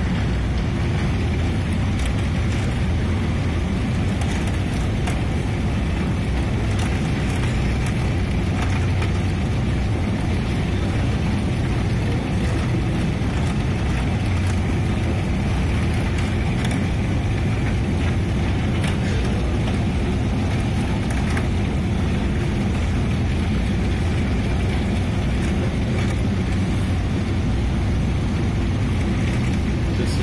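Long metro escalator running with a steady, unchanging low rumble from its moving steps and drive, with a faint high whine above it.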